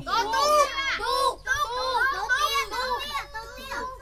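A group of young kindergarten children talking over one another, several high-pitched voices at once.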